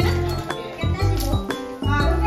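Background music with a steady beat, about two beats a second, over a deep bass pulse.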